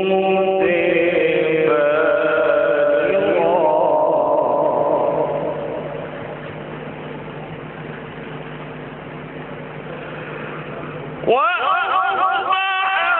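A male qari reciting the Quran in the melodic tajweed style, holding long drawn-out notes with wavering, ornamented pitch. The phrase fades out about halfway through, leaving a quieter steady background. A new loud phrase with sweeping pitch begins near the end.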